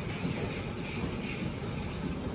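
Steady low rumbling background noise with no clear events.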